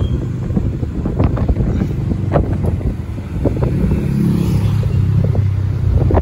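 Engine and road noise of a moving vehicle, with wind buffeting the microphone and a few sharp clicks or rattles. The engine note grows stronger about four seconds in.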